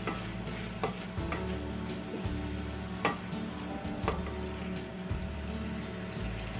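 Squid and pickled mustard greens sizzling in a cast-iron pan while a wooden spatula stirs them, with several sharp scrapes and knocks of the spatula against the pan, over steady background music.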